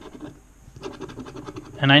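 Plastic scratching tool scraping the coating off a cardboard instant lottery scratch-off ticket in quick, short strokes, with a brief pause about half a second in.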